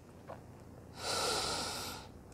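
A woman's audible breath, an airy rush about a second long starting halfway in and tapering off.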